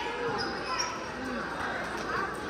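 Basketball being dribbled on a gym's hardwood court, under the chatter of spectators' voices.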